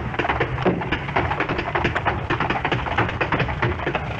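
Tap dancing: a fast, irregular run of sharp taps from tap shoes on a hard floor.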